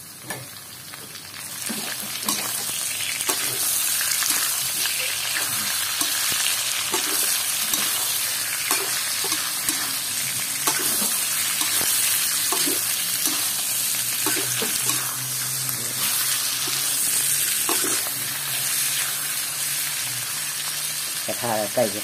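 Pork belly cubes sizzling in a hot metal electric wok, with a metal spatula scraping and turning them now and then. The sizzle grows louder about two seconds in as the fat heats.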